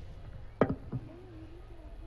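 A loud thump about half a second in, then a softer knock, picked up close by the lectern microphone.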